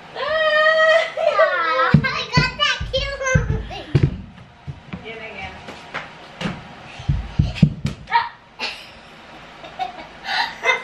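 A young child's high voice calls out in a long drawn-out note and then chatters for about four seconds. After that come scattered light thumps and knocks of bare feet on the floor, with a few short vocal sounds.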